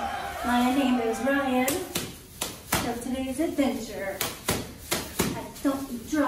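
Cheerleaders shouting a cheer chant in long, drawn-out syllables, with a run of sharp claps starting about two seconds in and continuing between shorter shouted phrases.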